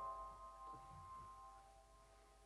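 A single high piano note, played quietly and held by the sustaining pedal, slowly dying away.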